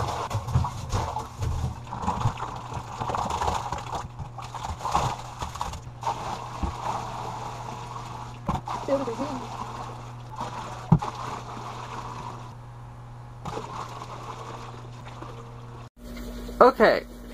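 Water poured from a plastic bucket into a glass aquarium, splashing and gurgling unevenly, with a few knocks of the bucket, over a steady low hum.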